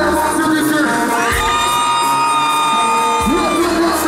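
Live kompa music through a concert sound system with a crowd cheering, heard from among the audience. A single long held note rises out of it about a second in and lasts over two seconds.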